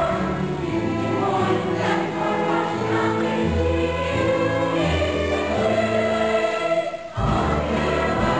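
A chorus of young voices singing a musical-theatre number with instrumental accompaniment. There is a short break about seven seconds in, then the music picks up again.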